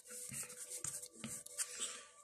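Trading cards sliding and rubbing against one another as a handheld stack is thumbed through a card at a time, faint, with a few soft flicks of card edges.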